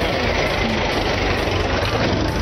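Mahindra 575 DI tractor's diesel engine running as the tractor drives close past, a steady low rumble.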